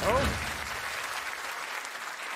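Studio audience applauding, opening with a voice exclaiming "oh".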